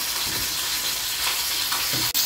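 A steady, even hiss with no distinct events.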